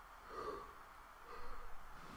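Two short, soft hums from a person's voice, about half a second in and again near the middle, over a faint steady background hiss.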